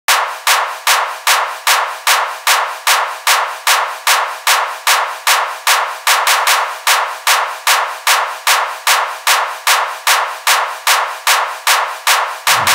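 Intro of a hardstyle electronic track: a sharp percussive hit repeating evenly about two and a half times a second, filtered thin with no bass.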